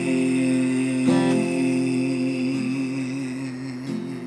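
A man singing long held wordless notes over acoustic guitar. A short note ends about a second in, then a second note at about the same pitch is held for nearly three seconds with a slight waver.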